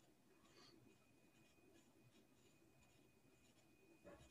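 Near silence: faint room tone with a thin steady high hum.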